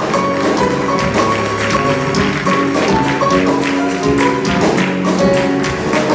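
Live band playing an instrumental passage of a habanera: held keyboard and bass notes under a quick, steady run of light percussion strokes.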